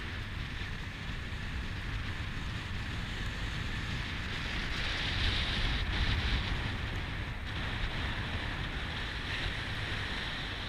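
Steady road noise of a car on the move: tyre rumble with wind noise on the camera microphone, growing a little louder about halfway through.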